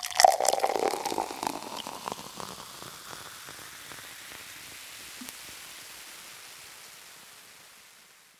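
Liquid pouring and fizzing: a dense crackle in the first second or two that thins into a soft hiss and fades out near the end.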